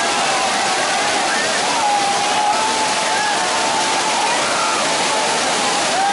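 A waterfall's steady rush of water pouring over rock, with people's voices calling over it.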